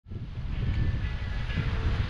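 Wind buffeting the microphone: a low, uneven rumbling noise that cuts in suddenly at the start and grows a little louder.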